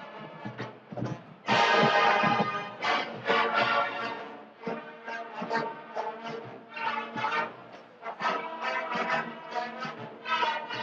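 Marching band of brass and drums playing, with rhythmic accented phrases and a sudden loud full-band chord about one and a half seconds in.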